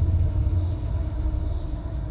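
A deep, steady low rumble: a sound-design drone under the trailer's score.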